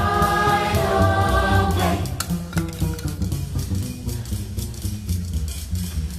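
Broadway show chorus and pit orchestra: the voices hold a chord for about two seconds, then drop out and the band carries on with bass and drums. A single sharp click sounds just after the voices stop.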